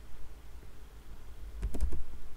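Computer keyboard being typed: a quick run of keystrokes near the end as digits of a number are entered.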